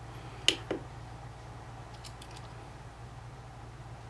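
Two quick clicks about half a second in, the press and release of the tester's plastic push button, with a few faint ticks later and a steady low hum underneath.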